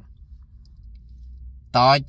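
A pause in a man's talk filled only by a low, steady rumble of background noise inside a car cabin; his voice comes back near the end.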